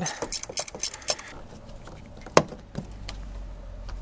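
15 mm wrench tightening an engine-mount bolt, metal on metal: a quick run of light clicks for about the first second, then a single sharper click about halfway through.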